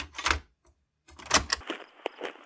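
A quick run of sharp mechanical clacks and knocks with dull low thumps under them, a short pause about half a second in, then another close cluster of clacks.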